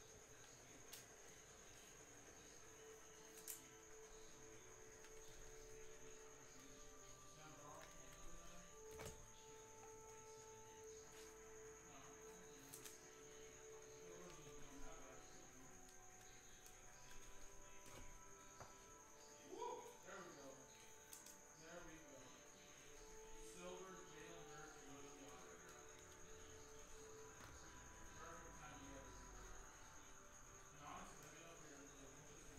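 Near silence: faint background music with held notes and a singing voice, over a steady high-pitched whine, with a few light clicks from trading cards being handled.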